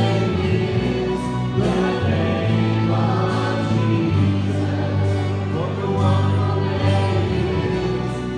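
Church choir singing a hymn in held, sustained notes, with a woman singing into a handheld microphone among them.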